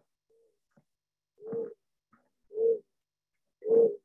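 Patient's phone recording of pulsatile tinnitus from an arteriovenous fistula: a whistling tone that swells and fades with each heartbeat (crescendo-decrescendo), about one pulse a second. It is the typical sign of an arteriovenous shunt and is played back over a video call.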